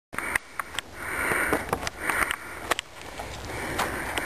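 A person breathing noisily: several hissing breaths about a second apart, with scattered sharp clicks.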